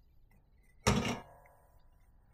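A single sharp metal clunk about a second in, with a brief ringing after it, as a soldering iron is pulled from its metal stand.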